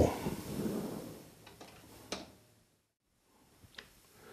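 A few faint, light clicks and taps of the copper strip being handled on a workbench, with a stretch of dead silence in the middle.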